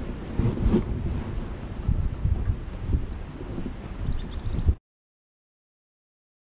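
Wind buffeting the microphone, heard as a gusty low rumble. It cuts off abruptly to total silence near the end.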